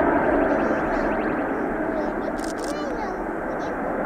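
Antonov An-124's four D-18T turbofan engines at takeoff power: a loud, steady jet roar as the freighter rolls down the runway toward liftoff.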